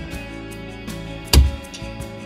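A single shot from a Kalibr Cricket .25 PCP air rifle, one sharp crack about a second and a third in, over guitar background music.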